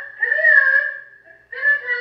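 A recorded woman's voice calling a pet, played back through the Feed and Go smart pet feeder's small built-in speaker, thin and high-pitched. Two drawn-out calls: a long one, then a shorter one starting about a second and a half in.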